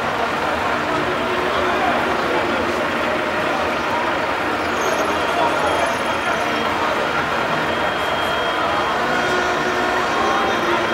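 A large coach bus running at a standstill, with a crowd of people talking around it.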